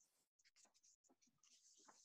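Near silence, with a few faint, brief rustles and scratches.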